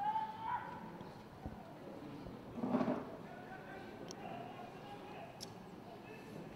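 Shouts from players and onlookers across an open football ground over a thin background: a short call at the start, and a louder burst of voices about three seconds in.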